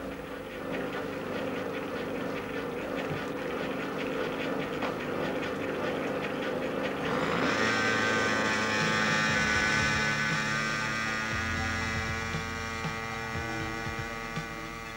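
Home-built gyroscopic thrust machine spinning: a steady mechanical hum with rapid ticking. About seven seconds in, a louder steady drone rich in overtones comes in.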